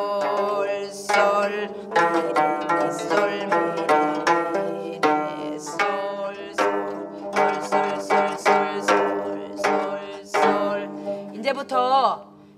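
Gayageum, the Korean plucked zither, played by several players together: a steady run of plucked single notes, a few a second, each ringing briefly before the next.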